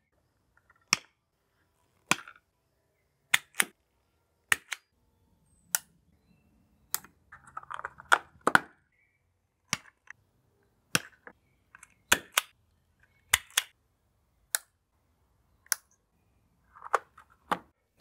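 Sharp plastic clicks and snaps from small outdoor junction boxes being closed and fitted: single and paired clicks about one a second, with faint rustling of handling between them.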